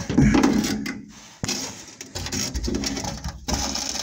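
Hand wire brush scrubbing flaking paint and surface rust off the steel sill of a van, in irregular strokes, with a single knock about a third of the way in.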